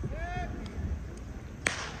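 A short, high-pitched voice call at the start, then one sharp click about a second and a half in, over a low rumble of wind on the microphone.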